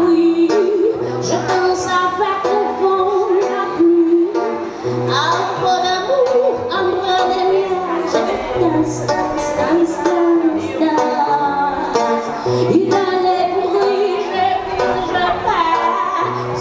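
A woman singing to her own acoustic guitar accompaniment, the guitar strummed in a steady rhythm, heard through a microphone.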